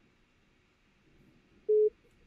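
Faint room hum, then near the end a single short, steady mid-pitched electronic beep: a FaceTime call-signalling tone on a video call that has just dropped.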